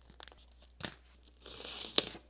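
A few faint clicks from a small plastic parts bag being handled, then near the end a hobby knife slitting open a yellow padded paper mailer: a dry scratchy rasp of about half a second, ending in a sharp click.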